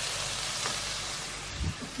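Diced carrots, peppers and onions and pieces of chicken sizzling steadily in frying pans, with a soft low thump near the end.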